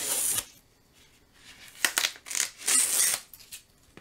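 Masking tape being peeled off the edges of a watercolour paper sheet in three short ripping pulls: one at the start, one about two seconds in, and a longer one just before three seconds. The tape is sticking hard to the paper.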